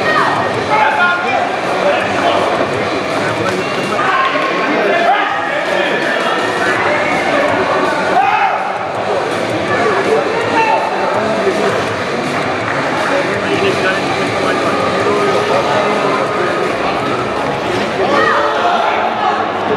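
Many overlapping voices and shouts from athletes, referees and onlookers at an arm-wrestling table, running on without a pause.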